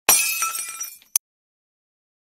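Glass shattering sound effect: a sudden crash, then ringing shards tinkling and dying away within about a second, followed by one short sharp crack.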